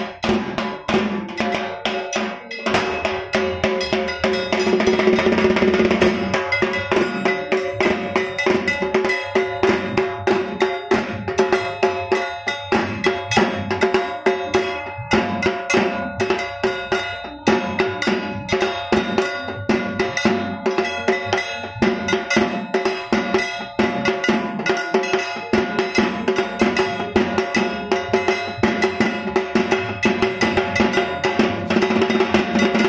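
Rhythmic percussion with metallic, bell-like strikes over sustained ringing tones, keeping a steady beat of about two strong strikes a second.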